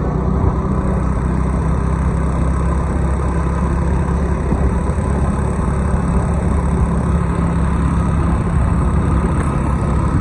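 A vehicle's engine drones steadily under constant road and wind rush as it cruises along at an even speed.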